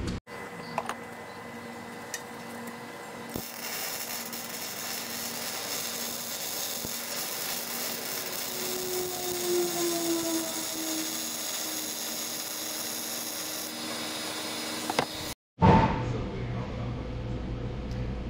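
Electric arc welding on the steel frame, a steady noisy sizzle that starts about three seconds in and stops abruptly near the end, over a faint steady hum.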